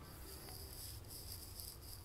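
Faint, soft scratching of a flat bristle brush drawn across a wet acrylic-painted circular plaque, over a low steady hum.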